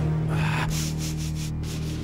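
A cartoon dog sniffing the air: one longer sniff, then a run of short quick sniffs, as he picks up a strange, strong smell. A low sustained music chord plays underneath.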